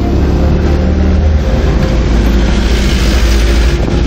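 Cabin noise of a moving car: a steady low engine and road rumble, with a hiss of passing air that builds in the second half and fades near the end.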